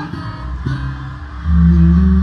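Live maskandi band music: a held sung note stops at the start, leaving the guitar picking over bass, with a loud low bass note about one and a half seconds in.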